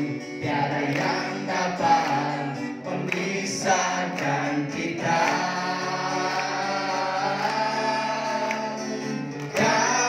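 A congregation singing a Christian worship song together, led by a man singing into a microphone. The first half moves quickly from note to note; the second half holds long notes.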